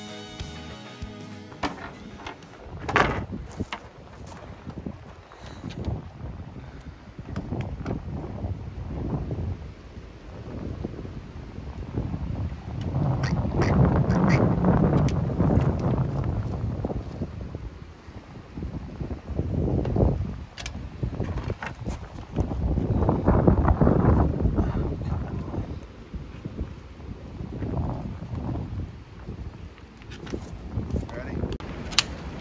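Wind gusting against the microphone, a low rumbling buffet that rises and falls and swells loudest about halfway through and again near three-quarters of the way. Guitar music fades out in the first second or two.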